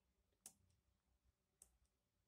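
Near silence with two faint, short clicks, one about half a second in and another near the end.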